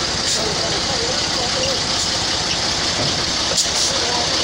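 Fire truck's engine running at low speed with a steady low rumble as the truck creeps forward off a trailer, with voices in the background.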